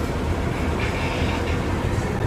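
A moving tour bus heard from inside the cabin: a steady low rumble of engine and road noise.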